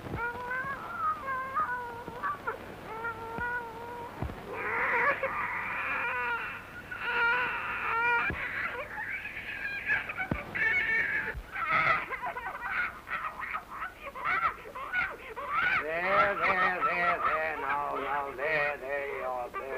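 A puppy whining and whimpering in high, wavering cries that go on almost without pause.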